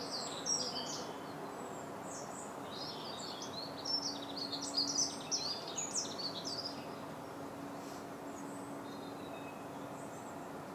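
A small songbird singing in bursts of quick, high chirps and trills, busiest from about three to six seconds in, over steady outdoor background noise with a faint low hum.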